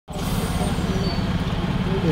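Heavy lorry's diesel engine running close by, a steady low rumble.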